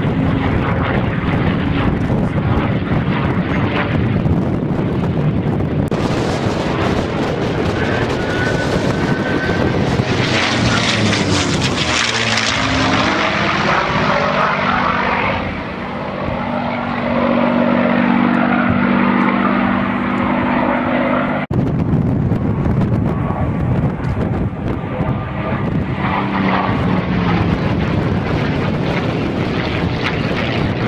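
P-51 Mustang's Rolls-Royce Merlin V12 engine running at display power as the fighter manoeuvres and passes overhead, loud throughout, the note swelling and sweeping in pitch as it goes by. The sound breaks off abruptly about two-thirds of the way through and carries on at a different pitch.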